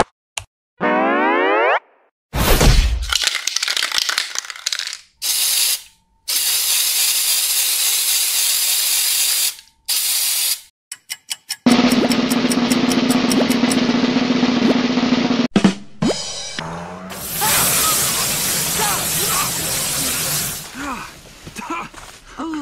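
A string of cartoon spray-painting sound effects: a rising boing-like glide, then several bursts of aerosol spray-can hiss, a quick run of clicks, and two longer hissing passages, the first with a steady low hum under it.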